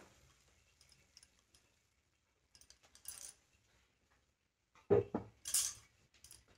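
Sparse light clinks and scrapes of a silicone spatula stirring chopped coriander into a pan of cooked vegetables, with bangles clinking on the stirring wrist. Quiet at first, with a louder cluster of clinks near the end.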